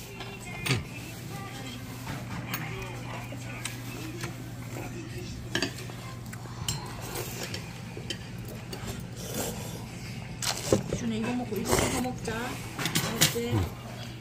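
Metal chopsticks and spoons clinking and scraping against stainless-steel bowls as noodles are eaten, in scattered short clicks over a steady low hum. Quiet voices come in near the end.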